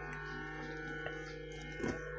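Electronic keyboard sounding a soft, sustained chord of held notes with a steady low tone underneath; a faint click about a second in.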